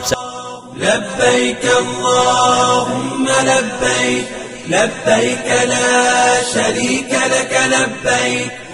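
A chanted vocal, a voice or voices holding long notes in repeated phrases about two seconds long.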